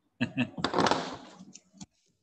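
A person's voice over a video call: two short vocal sounds, then a loud breathy burst, with a sharp click near the end.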